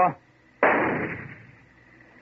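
A single rifle-shot sound effect from an old radio drama: a sudden sharp crack about half a second in that dies away over about a second. The recording is thin and band-limited, like an old radio broadcast.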